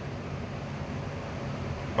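Steady low background hum and hiss of room noise, with no distinct event.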